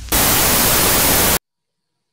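A loud burst of TV static hiss, cutting off suddenly about a second and a half in.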